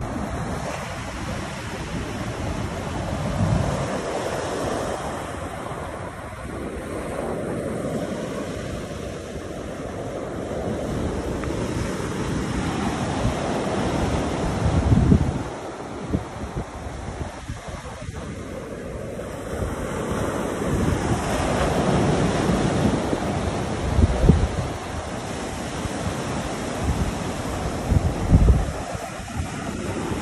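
Ocean surf breaking and washing up a sandy beach, with wind buffeting the microphone. The buffeting comes in heavier low gusts about halfway through and twice near the end.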